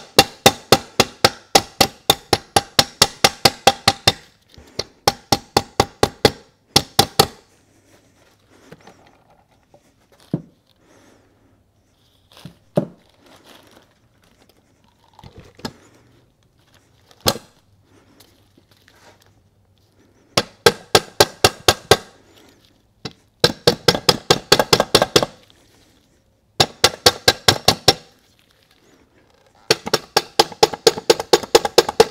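Rubber mallet tapping rapidly, about five blows a second in runs of a few seconds, on the planetary carrier assembly of an NP246 transfer case to drive it through the annulus gear and seat it on its bearing; with new, tight-tolerance parts it goes in only little by little. In a lull near the middle there are only a few single knocks and light handling sounds.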